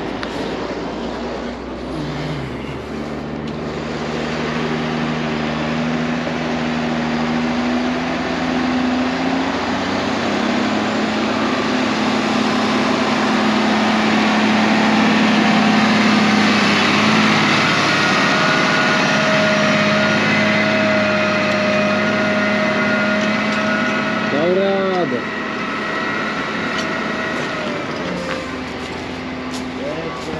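New Holland T6 tractor's diesel engine running steadily as the tractor drives in close. The sound builds to its loudest about halfway through, then eases off.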